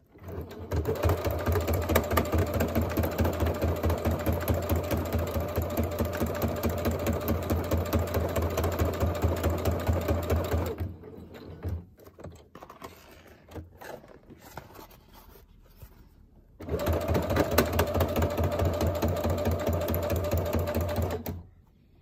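Computerized sewing machine running a straight stitch for about ten seconds and stopping. After a pause of about six seconds with faint handling sounds, it runs again for about five seconds and stops.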